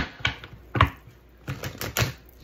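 A deck of tarot cards being handled and shuffled by hand: several short, sharp flicks and taps of card, irregularly spaced, with a cluster near the end.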